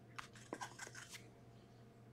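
Faint taps and rustles of paper and cardboard as a handwritten paper sign is set against a stack of sealed card boxes, a few light clicks over about the first second, then near silence.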